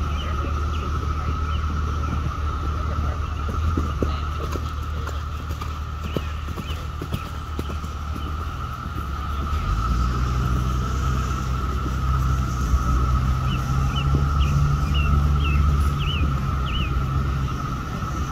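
A steady low engine hum that shifts up and grows louder about ten seconds in, over a constant high-pitched drone, with a few short bird chirps near the start and again later.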